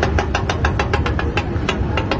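Metal spatula chopping a fry on a flat iron griddle: a rapid run of sharp clacks, several a second, thinning out near the end, over a steady low rumble.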